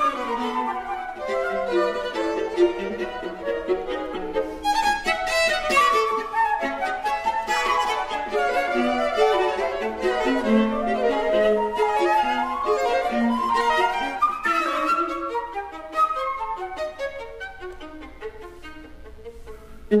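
Classical chamber trio of flute, violin and viola playing together, with continuous interweaving melodic lines. The music softens over the last few seconds.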